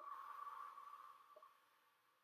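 Metal singing bowl struck once with a mallet, ringing with a single clear tone that fades away over about two seconds.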